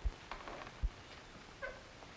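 Apartment front door being opened: two dull thuds of the latch and handle, then a short squeak of the door, probably its hinge, about three-quarters of the way through.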